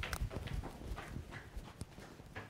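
Footsteps on a hard floor: a few short, irregular knocks of shoes as people walk.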